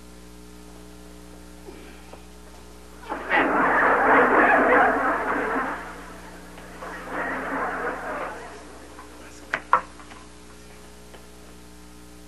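Studio audience laughter in two waves: a loud burst lasting about three seconds, then a quieter second wave. Near the end come two sharp knocks in quick succession.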